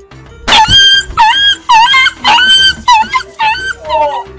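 A single sharp smack about half a second in, then a quick run of about eight high dog-like yelps, each a short held cry that bends at its ends, over background music.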